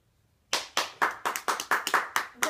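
A small child clapping her hands quickly, starting about half a second in.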